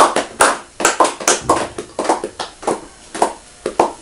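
A rapid run of sharp hand smacks, about three or four a second, growing fainter toward the end.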